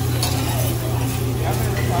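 Metal spatulas clinking and scraping on a hibachi flat-top griddle as fried rice is chopped and turned, a few sharp taps standing out over a steady low hum.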